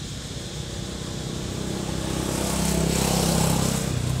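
A motor vehicle engine passing close by, growing steadily louder to a peak about three seconds in and easing off near the end.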